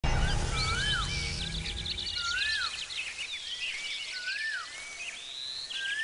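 Birds chirping: a whistled call that rises and falls, repeated about every second and a half to two seconds, over quicker high twittering. A low rumble underneath fades out about two seconds in.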